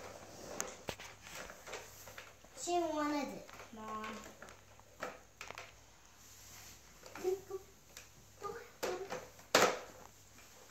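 Young children's vocal sounds, one longer gliding cry or babble a few seconds in and shorter sounds later, over scattered clicks and knocks of a plastic toy truck on a tile floor. A single sharp knock near the end is the loudest sound.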